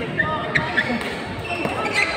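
A badminton rally: several sharp racket hits on the shuttlecock and short squeaks of shoes on the court floor, over voices chattering in a large sports hall.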